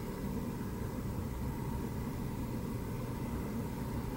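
A car's starter motor cranking the engine steadily without it firing, the engine computer unplugged so there is no fuel or spark.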